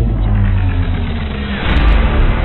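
Cinematic logo-ident sound design: a deep, loud rumble of sustained low tones, swelling into a whoosh near the end.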